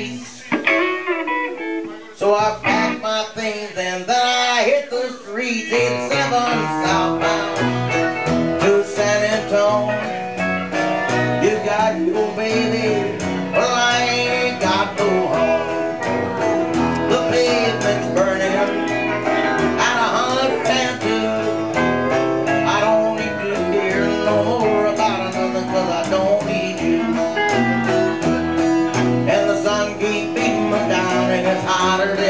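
A live band playing a song: a guitar plays almost alone at first, then about seven seconds in an upright bass comes in under it and the band plays on together.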